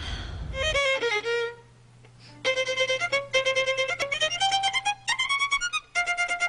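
Solo violin playing: a few notes, a short break about two seconds in, then a quick run of short, separate bowed notes with a slide up in pitch near the end.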